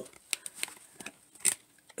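A few light plastic clicks and taps from handling a whiteboard marker, with a sharper click about one and a half seconds in.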